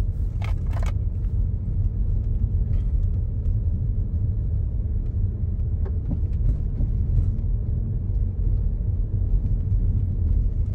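Audi car driving, heard from inside the cabin: a steady low rumble of engine and road noise, with two short clicks about half a second in.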